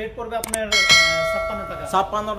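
A single bell-chime sound effect, struck once about two-thirds of a second in and ringing out as it fades over about a second.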